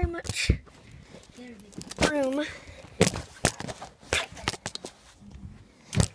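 Scattered bumps, knocks and rustles of children crawling through a cramped space under a bed, with the phone camera being handled. A short voice sounds about two seconds in.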